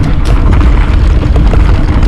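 Wind buffeting the microphone of a Trek Remedy mountain bike riding fast down a dirt singletrack, with a continuous deep rumble from the tyres on the trail and a few short knocks and rattles from the bike.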